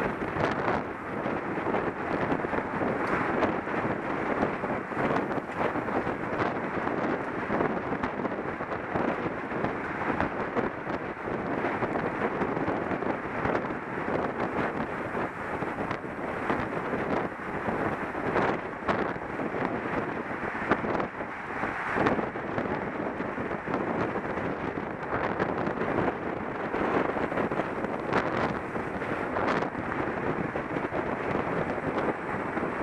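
Steady wind noise on a helmet-mounted camera's microphone from riding at speed in a road-cycling pack, broken by many small knocks and rattles.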